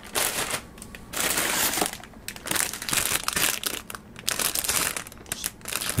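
Clear plastic bags holding model-kit runners crinkling and rustling as they are handled, in a run of uneven bursts, the longest in the first second.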